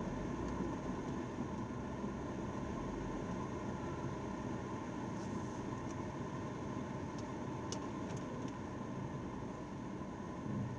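Steady cabin noise of a car running slowly or idling, heard through a dashcam's microphone, with a few faint ticks about eight seconds in.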